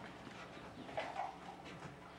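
Faint rustling of thin Bible pages being turned, with small irregular knocks of paper and hands on a wooden pulpit and a slightly louder one about a second in.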